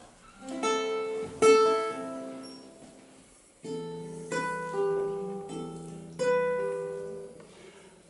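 Acoustic guitar: a handful of chords struck one at a time and left to ring out, each fading before the next.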